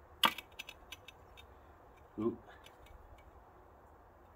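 A spirit level being set against a course of bricks on edge to plumb them: one sharp knock, then a few light clicks and taps. A short vocal sound about two seconds in.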